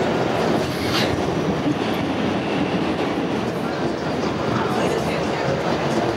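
Steady running noise of a subway train in motion, heard from inside the car.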